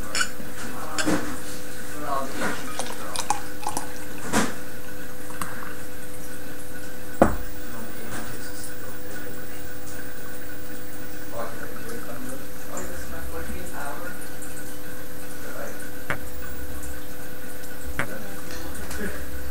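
Guinness Black Lager being poured from its glass bottle into a glass, with faint splashing and a few glassy clicks; the sharpest knock comes about seven seconds in. A steady low hum runs underneath.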